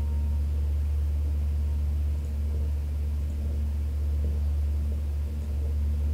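A steady low hum in the recording's background, with no speech.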